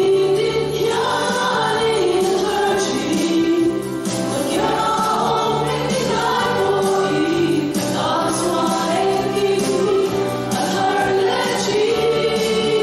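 Women's choir singing a Christian song into microphones, amplified over the church sound system, the voices held in long sustained phrases.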